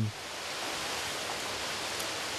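Steady, even hiss of outdoor background noise from a field-recorded interview location, with no distinct events in it.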